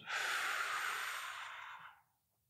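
A man blowing out his breath hard, a long hiss that fades away over about two seconds and stops near the end: the last third of a staged exhale, emptying the lungs.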